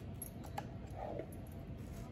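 Quiet handling of a cardboard candle box as a glass jar candle is slid out of it, with a faint tap about half a second in.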